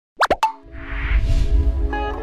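Animated intro sound design: three quick rising plops in rapid succession, then electronic intro music with held tones over a deep pulsing bass and soft whooshes.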